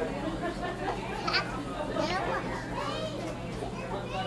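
Indistinct voices and chatter, with a few short high-pitched vocal sounds in the middle, over a steady low hum.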